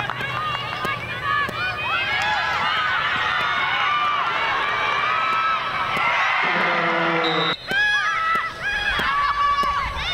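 Many high-pitched women's voices shouting and calling over one another on a lacrosse field, mixed with crowd noise.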